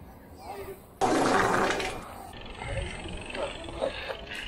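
A bike landing a drop from a ledge onto stone paving: a sudden loud clatter and scrape about a second in that lasts about a second, then fades to scattered rattling.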